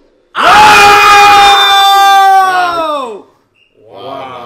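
A man's long, very loud high-pitched scream, held on one note for nearly three seconds, then sliding down in pitch as it dies away.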